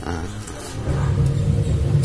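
A low, steady engine hum, like a motor vehicle running close by, that grows louder about a second in.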